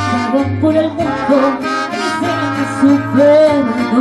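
Live mariachi music: a woman singing with two trumpets and strummed guitars over a plucked bass line.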